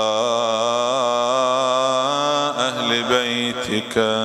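A man chanting an Arabic devotional salutation in a slow, melodic style. He draws out one long wavering note that breaks off about two and a half seconds in, and a new phrase begins near the end.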